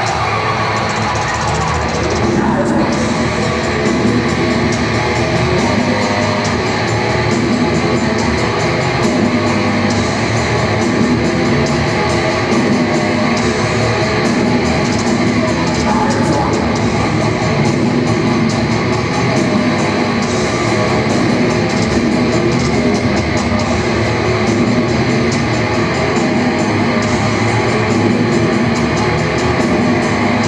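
Heavy metal band playing live, loud and steady: distorted electric guitar with bass and drums, as captured on an audience recording in an arena.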